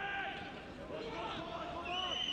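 Television football commentator speaking, over the steady noise of a stadium crowd.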